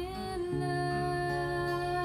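A woman's voice holding one long note over a slow acoustic guitar, with a low guitar note ringing under it from about half a second in.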